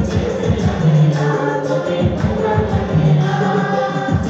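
Live worship music: a group singing together over drums beaten with sticks and a keyboard, with a steady beat throughout.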